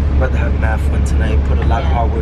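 Steady low rumble of a moving bus, heard from inside the cabin, with voices over it.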